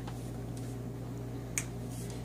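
Steady low hum with a single sharp click about one and a half seconds in.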